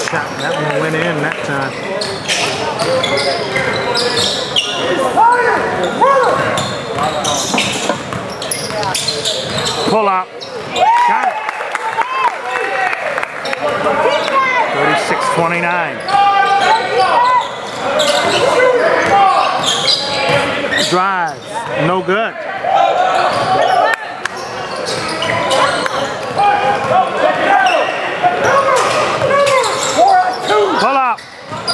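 Basketball bouncing on a hardwood gym floor during live play, with sharp thuds through the whole stretch and voices calling out, echoing in a large gymnasium.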